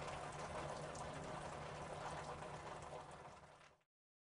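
Water trickling and dripping from a burst water balloon slung in a net. The sound is steady, with faint drip ticks, then fades and stops shortly before the end.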